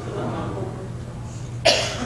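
A single short, sharp cough near the end, over faint murmuring voices in a church sanctuary.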